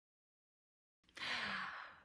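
Silence, then about a second in a woman's short, breathy gasp lasting under a second.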